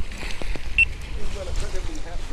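Wind rumbling on the microphone and small waves washing against the jetty's granite rocks, with a few light clicks about half a second in.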